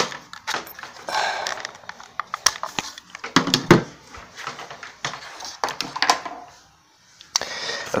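Things being moved about on a wooden desk: scattered knocks and clicks with a few short scrapes, falling silent briefly near the end.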